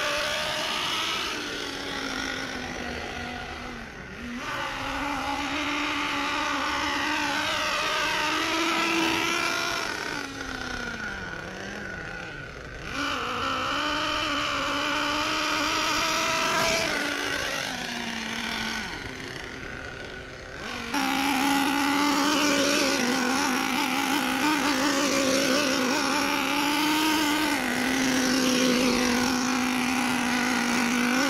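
FS Racing 31801 1/8-scale RC monster truck's 4.8 cc two-stroke nitro engine running as the truck is driven, its pitch rising and falling with the throttle.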